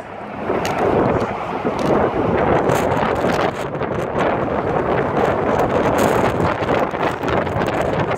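Wind buffeting a handheld camera's microphone outdoors: a loud, rumbling rush that swells and dips unevenly.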